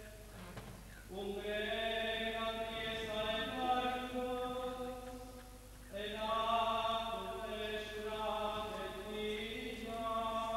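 A man chanting Byzantine liturgical chant solo on long held notes, breaking off briefly for breath about a second in and again just before six seconds.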